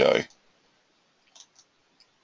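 Two faint computer mouse clicks close together, a little past the middle, with a spoken word at the very start.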